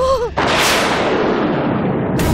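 A dramatic boom-and-whoosh sound effect of the kind used as a TV-serial stinger: a sudden loud burst that dies away over about a second and a half. Just before it comes a brief wavering note.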